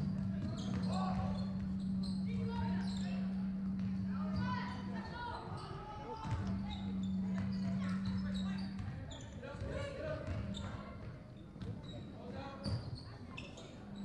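Basketball dribbled on a hardwood gym floor during play, with scattered voices of players and spectators echoing in the large hall. A steady low hum runs underneath, cutting out and returning a couple of times.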